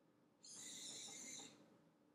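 Home-built Raspberry Pi cat feeder dispensing one ounce of dry cat food from its hopper into the bowl: a brief hissy whir lasting about a second.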